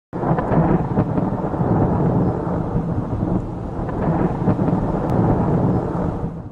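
Thunderstorm sound effect: thunder over steady rain, starting abruptly and continuing throughout.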